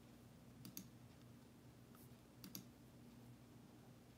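Near silence: a low steady hum with a few faint clicks, a pair just under a second in, one at two seconds, and another pair around two and a half seconds.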